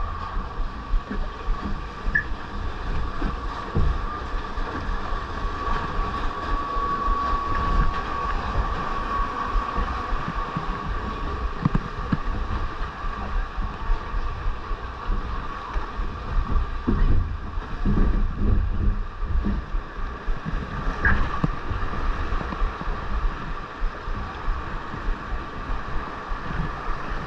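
Log flume boat floating along its water trough: steady running water and wind on the microphone, with a thin steady tone above it and a few low knocks about two-thirds of the way through.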